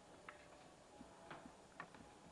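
Near silence: faint room tone with a few faint, irregular ticks.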